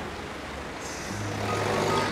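A car engine running low and steady as the car creeps along at walking pace, under background music with sustained notes. The sound grows fuller and louder from about a second in.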